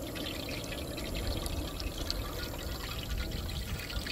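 Steady rushing noise of propane burners heating two large pans of frying oil, with faint scattered ticks as the oil gets hot.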